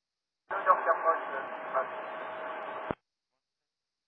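A short, weak, hard-to-read VHF radio transmission, an aircraft's check-in call on the approach frequency, heard as thin, muffled speech with a faint steady tone under its second half. It cuts off abruptly after about two and a half seconds.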